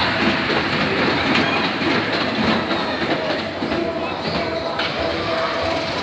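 Train of a small children's caterpillar roller coaster rolling along its steel track, the wheels rumbling and clattering steadily.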